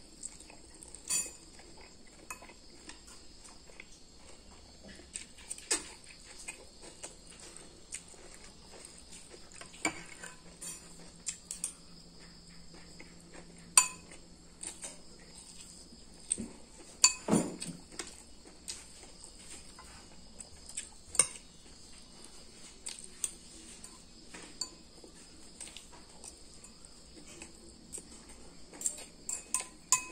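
Metal spoon and fork clinking and scraping against a ceramic bowl during a meal, with irregular sharp clinks throughout and the loudest knocks a little past the middle.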